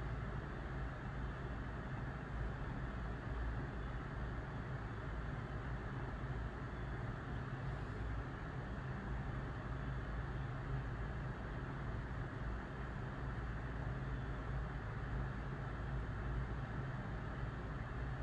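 Steady low hum and hiss of background room noise, unchanging throughout.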